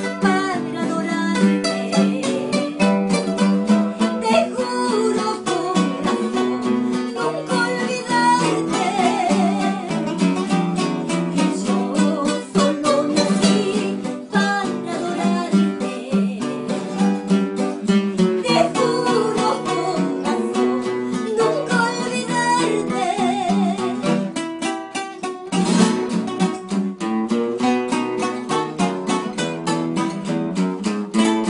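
Three acoustic guitars playing a pasillo together, picked and strummed, with a woman singing a melody with vibrato over them.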